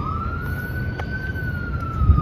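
Emergency vehicle siren wailing: the pitch sweeps up quickly at the start, holds high for about a second, then falls slowly.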